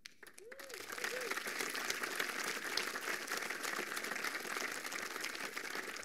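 Conference hall audience applauding steadily after a rallying line, with a couple of short calls from the crowd in about the first second.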